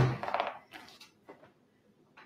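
A person moving into place on a floor: a heavy thump right at the start, then brief rustling that fades, and a light knock about a second in.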